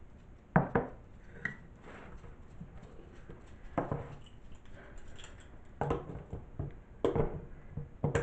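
Kitchen utensils being handled on a countertop: a few separate knocks and clicks, some in close pairs, from a glass measuring cup and a metal can.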